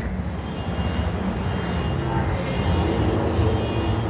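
Steady low background rumble with no speech over it, and faint thin high tones at times.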